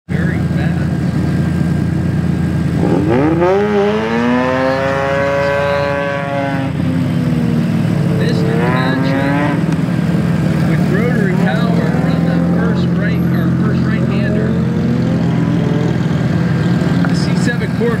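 Two-rotor rotary engine of a 2009 Mazda RX-8 on an autocross run. It revs up sharply about three seconds in and holds a high note for a few seconds, then rises again around nine seconds, over a steady low drone.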